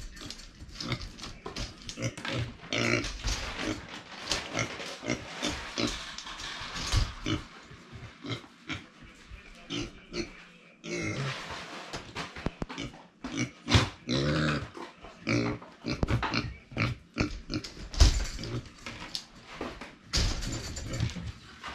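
A micro pig grunting and oinking in quick runs, with sharp knocks and rustling as it moves about its wire playpen. The grunting is the pig's excitement while its food is being prepared.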